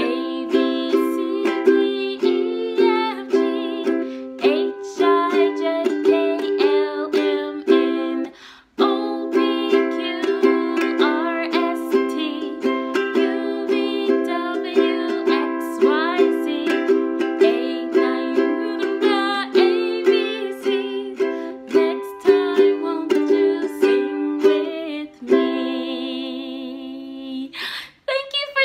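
Makala ukulele strummed in a steady rhythm, playing through a song's chords, with a brief break about eight and a half seconds in. Near the end the strumming stops and the sound fades away.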